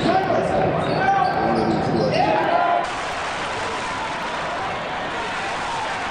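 Live basketball game audio: a ball bouncing on the court amid arena crowd noise, with a few short squeaks. About three seconds in the sound changes abruptly to a quieter, steadier arena hiss.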